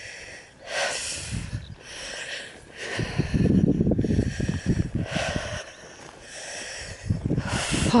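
Wind buffeting a handheld camera's microphone in low, uneven rumbles, strongest in the middle, with a few short hissy breaths or rustles as someone walks through long grass.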